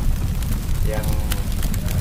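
Wind buffeting the microphone: a loud, uneven low rumble with scattered crackles. A man's voice says one word about a second in.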